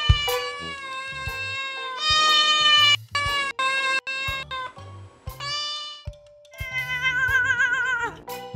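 People imitating cats, taking turns at long drawn-out meows and yowls that slide in pitch, over background music. Near the end comes one long wavering yowl.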